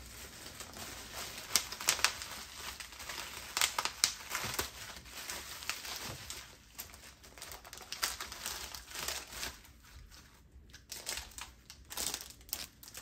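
Plastic packaging crinkling as it is handled, in irregular sharp crackles that thin out briefly near the end.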